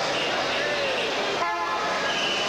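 A vehicle horn sounds once, briefly, about one and a half seconds in, over the steady noise of a crowd.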